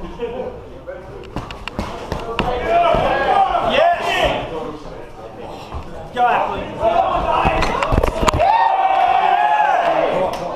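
Boxing gloves thudding as punches land in a sparring bout, with ringside shouting, including one long drawn-out yell near the end, echoing in a large hall.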